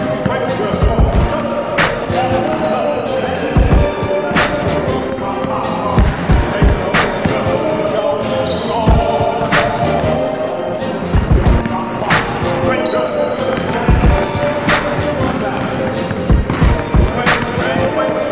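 A basketball being dribbled and bounced on a hardwood gym floor, a run of irregular thuds, heard under a music track with vocals.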